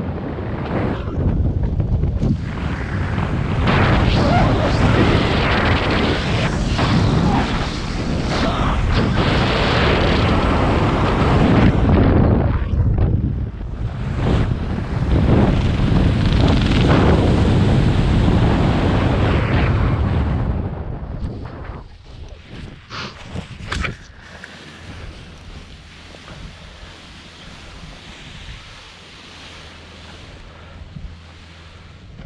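Wind rushing over a helmet-mounted camera's microphone during a parachute descent under canopy, loud and buffeting. About 21 seconds in, the rush falls away sharply as the canopy lands, with a few brief knocks over the next couple of seconds, then a much fainter steady wind.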